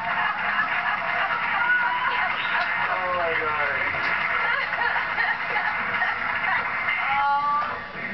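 A television playing in the background: voices over music from a broadcast.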